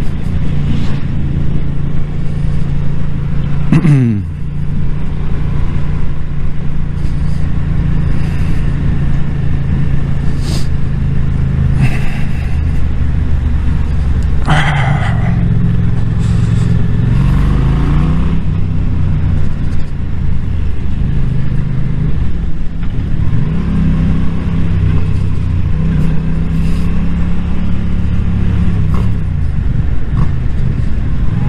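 Yamaha motorcycle engine running while riding through town, its revs dropping sharply about four seconds in and rising again several times as the rider accelerates, with wind rumble over the microphone.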